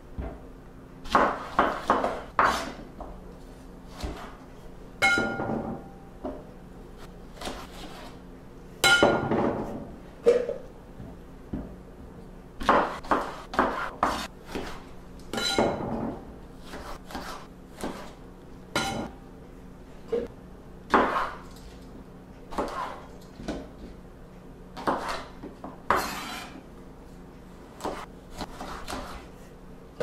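Kitchen knife chopping apples on a wooden cutting board: irregular knocks of the blade striking the board, with a few brief ringing clinks among them.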